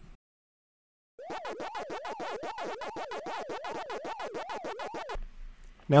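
Retro 8-bit video-game sound effect for a 'Continue?' screen: a stream of electronic beeps, about nine a second, whose pitch rises and falls two or three times a second. It starts about a second in and cuts off about a second before the end.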